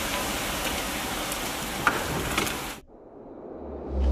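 About ten kilograms of potassium nitrate and sugar rocket fuel burning with a steady hiss and scattered crackles, which cut off abruptly just under three seconds in. A low hum then swells near the end.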